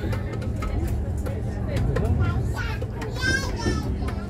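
Steady low hum of a river boat's engine, with people's voices aboard and a high-pitched voice about three seconds in.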